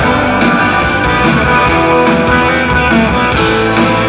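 Live rock band playing, with electric guitars to the fore over bass and drums.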